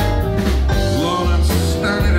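Live blues band playing: electric guitar with bent notes over a heavy bass line and drums.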